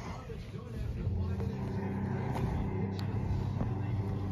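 A steady low rumbling drone from the opening of a short film playing on a computer, setting in about a second in.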